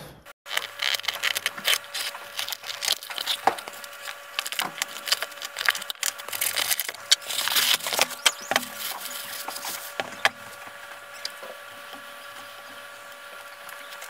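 Cardboard packaging being torn and rustled and metal parts being handled, a quick run of clicks, scrapes and knocks that gives way to a faint steady hum about ten seconds in.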